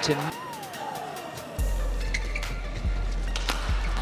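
A short rising-and-falling squeak of court shoes and a few sharp clicks as the badminton rally ends. About one and a half seconds in, arena music with a deep, steady bass beat starts suddenly, played at the end of a game.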